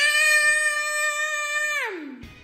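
A young boy imitating a car engine with his voice: one high-pitched held note that swoops up at the start, stays level, and drops away near the end.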